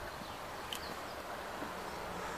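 Quiet, steady outdoor background noise with a single faint click about a third of the way in.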